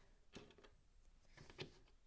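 Near silence: room tone with a low steady hum and two faint, brief sounds, about half a second in and about a second and a half in.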